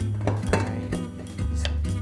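Background music, over a few light metallic clinks of a stainless steel pressure cooker lid being seated and twisted to lock onto the pot.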